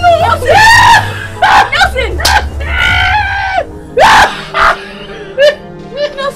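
Repeated high-pitched screams and shrieks of fright, each a short rising-and-falling cry, coming in about seven bursts, over background music with a low bass line.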